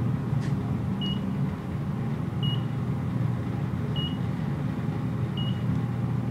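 Fujitec traction elevator cab in motion: a steady low hum of the ride, with a short high electronic beep repeating about every one and a half seconds.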